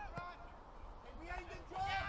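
Faint voices of footballers calling out on the pitch during play, a few short shouts in the second half, over a low outdoor rumble.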